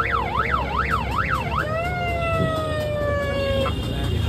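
Electronic siren fitted to a scooter and sounded from its handheld control unit: a fast rising-and-falling yelp, about two and a half sweeps a second, switches about a second and a half in to a single tone slowly falling in pitch, which cuts off shortly before the end.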